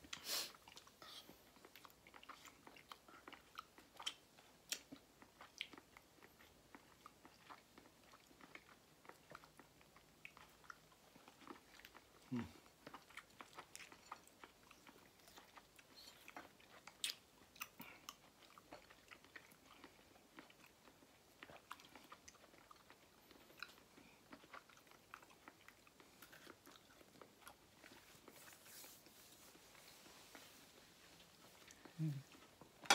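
Faint, close-up sounds of someone biting and chewing fresh, juicy fruit slices: soft, wet clicks and small crunches scattered irregularly throughout.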